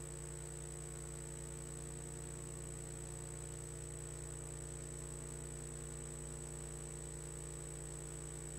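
Steady, faint electrical hum with a thin high-pitched whine above it, from the sound or recording equipment in the lull between the song and the talk.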